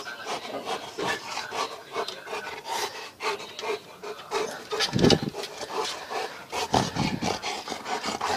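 Close rubbing and scuffing noises as a dog mouths a person's forearm and tugs it along, fur and skin brushing near the microphone, with two louder bumps about five and seven seconds in.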